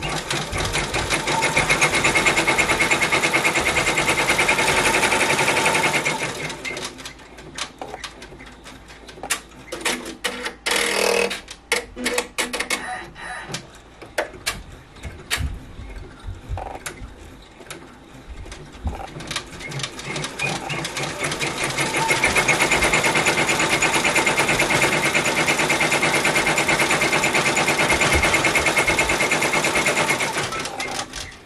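Ricoma multi-needle embroidery machine running at speed, a fast even stitching rattle as it tacks down chunky chenille yarn. Around six seconds in it drops to a quieter stretch of irregular clicks and ticks, then picks back up to full-speed stitching about twenty-two seconds in.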